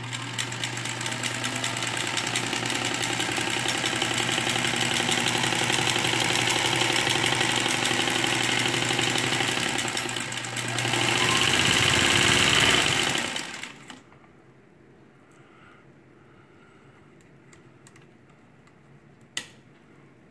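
1937 Singer Featherweight 221 sewing machine running steadily under its electric motor, growing louder for its last few seconds before stopping about two-thirds of the way through. After a quiet pause, a single sharp click near the end as the machine's sewing light is switched on.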